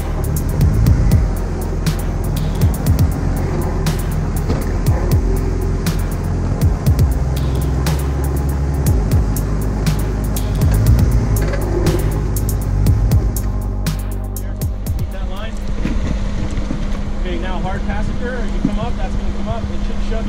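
Background music laid over a Jeep Wrangler's engine running as it crawls over rock, with scattered clicks and knocks. In the last few seconds the music gives way to the engine's steady hum and voices.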